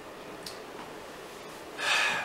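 A pause filled with low room tone, then a man's quick, audible intake of breath near the end.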